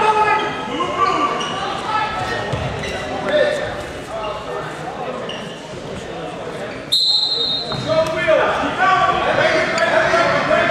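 Several people shouting from the sidelines in a large echoing gym during a wrestling bout, with occasional thuds of feet and bodies on the wrestling mat.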